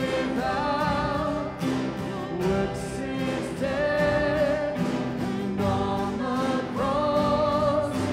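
Live contemporary worship band: voices singing the melody over acoustic guitar, electric bass, drums and piano, with a steady drum beat.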